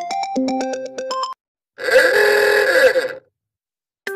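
A short synth-keyboard tune plays and cuts off. After a brief gap comes a loud, harsh, groan-like voice sound effect about a second and a half long, its pitch rising and then falling.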